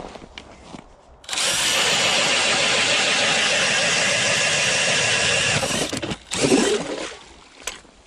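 DeWalt cordless drill spinning a Strikemaster Mora hand auger through the ice on a Clam drill-auger plate: it starts about a second in, runs steadily for about four seconds and stops suddenly. A few softer knocks and scrapes follow.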